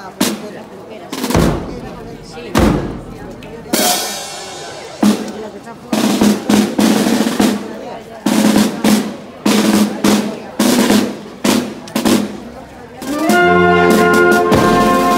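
Marching band percussion playing a drum cadence between pieces: bass drum, snare drum and clash cymbals, with slow strikes at first, a ringing cymbal crash about four seconds in, and a busier beat from about six seconds. The brass comes back in near the end.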